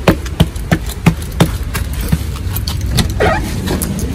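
Footsteps and shoe scuffs on a doormat, a quick run of sharp taps about three a second at first, then keys jangling and clicking at a front door lock, over a steady low rumble.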